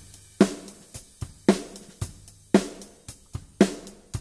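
Recorded drum kit playing back a steady groove: four snare backbeat hits about a second apart, each with a ringing body, with kick and hi-hat between them. The hi-hat is brightened by a saturation plugin, which fizzes too much and makes the distortion too present to the mixer's ear.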